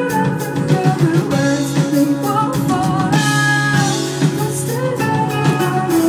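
A female singer singing live over strummed acoustic guitar and a backing band, with a steady beat from the drums.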